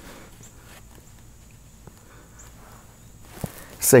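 Faint handling sounds of a playground play-clock dial being turned by hand, a few soft clicks over quiet outdoor background; a man's voice starts near the end.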